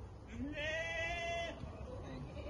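A sheep bleating once: a single call about a second long that starts low, rises, then holds a steady note.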